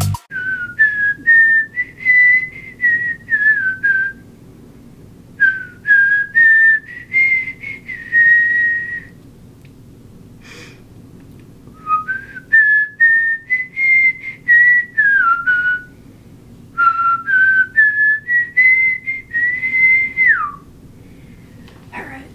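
A person whistling a tune in four phrases with short pauses between them. Each phrase steps through a run of notes, and the last one ends on a held note that slides down.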